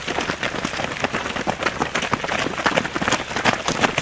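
Footsteps of a pack of runners passing close by on a gravel path: many quick, overlapping footfalls with no gaps between them.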